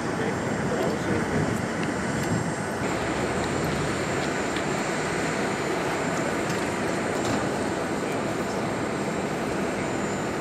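Steady jet aircraft engine noise across an airfield, an even wash of sound with a thin, constant high whine.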